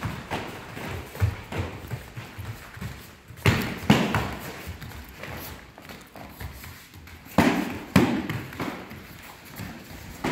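Kicks and strikes landing on padded taekwondo chest protectors during sparring, with two quick pairs of loud smacks, one about three and a half seconds in and another about seven and a half seconds in. In between, bare feet thud and shuffle on the foam mats.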